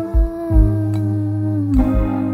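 Background music: sustained warm chords over soft, low drum hits, with the held notes sliding slightly down in pitch near the end.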